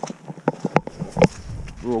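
Irregular knocks and taps of walking: footsteps and trekking-pole strikes on wet moorland ground, about half a dozen in the first second and a quarter. A brief low rumble follows about halfway through.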